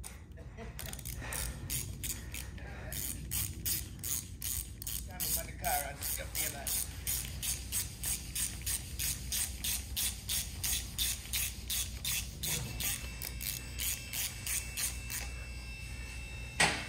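Hand ratchet wrench clicking in a steady rhythm of about three strokes a second as a retainer bolt is run down on the engine block, starting about a second in and stopping just before the end.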